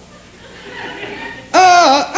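Audience laughing. About one and a half seconds in, the puppet's high-pitched ventriloquist voice lets out a loud, wavering cry.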